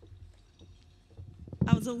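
Faint low rumble of room noise with a few soft knocks, then a woman starts speaking near the end.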